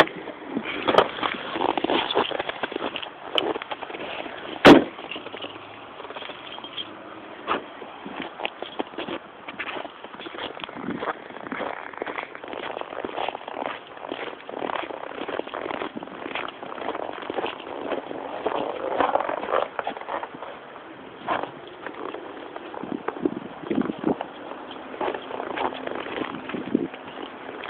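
A car driving on a winter road: steady road noise peppered with many small clicks and crackles, and one sharp knock about four and a half seconds in.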